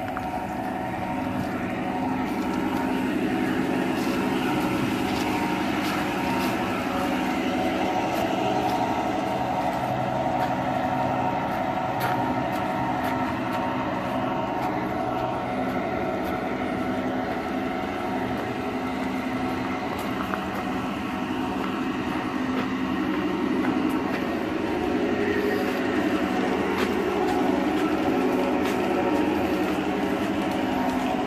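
G-gauge model F-unit diesel train running along garden railway track: a steady mechanical hum with a few faint, irregular clicks.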